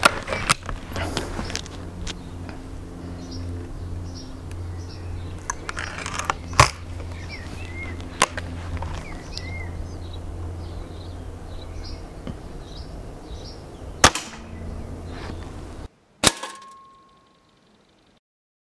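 Remington Express spring-piston air rifle being handled and fired: small clicks of handling and loading, a loud clack about six and a half seconds in, then one sharp shot about fourteen seconds in. Just after, a single pellet strike on the target with a short ring.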